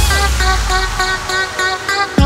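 Electronic dance music breakdown from a funkot DJ mix: a horn-like synth riff of short repeated notes, about four a second, over a held bass, with no drums.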